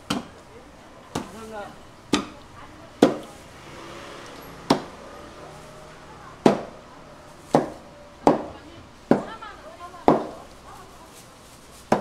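A broad cleaver-like knife chopping through a giant stingray's cartilage and into the cutting board: a series of sharp chops, roughly one a second and unevenly spaced.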